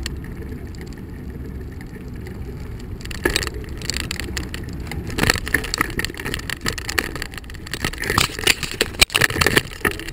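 Riding noise from a bicycle-mounted camera: a steady low rumble of wind and tyres on asphalt. Irregular knocks and rattles start about three seconds in and come thicker toward the end.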